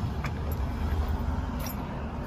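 Car idling: a steady low rumble, with a faint click or two.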